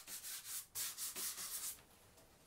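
A hand rubbing across the surface of a painted panel in short, dry, scratchy strokes, about four a second, stopping just before the end.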